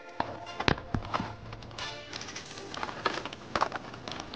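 Blister-carded Hot Wheels cars clacking against each other and the metal peg hooks as they are flipped through by hand: a run of irregular sharp clicks and knocks, the loudest a little under a second in.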